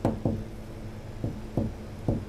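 About four short knocks at uneven intervals, each dying away quickly.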